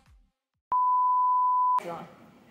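A single steady electronic beep, one pure high tone lasting about a second, starting and stopping abruptly.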